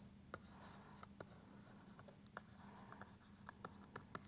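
Faint handwriting with a stylus on a tablet: scattered light taps and short scratching strokes, very quiet, over a low steady hum.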